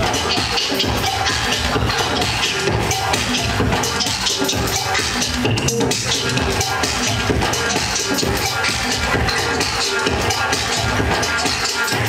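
DJ mix of electronic dance music with a steady beat, playing loud and unbroken.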